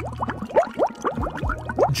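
Water bubbling and gurgling as a body plunges into a lake: a quick run of short rising gurgles, several a second, over a low steady hum.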